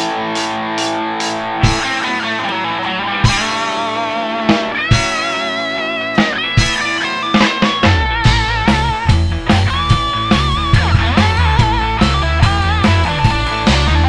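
Rock band playing an instrumental intro: electric guitar chords ring out with regular accents, then a lead electric guitar line with string bends and vibrato takes over. About halfway through, the bass and drums come in fuller.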